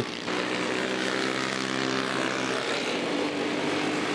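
Racing kart engines running at speed in a race, a steady buzzing drone whose note shifts slightly near the end.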